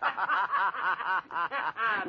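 A man laughing heartily: a long, unbroken run of quick, repeated laughs.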